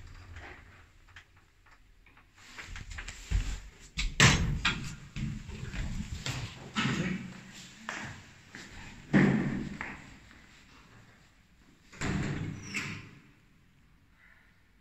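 Metal doors of a Zremb passenger lift banging and slamming several times as they are opened and shut. The loudest slam comes about four seconds in, with others about nine and about twelve seconds in.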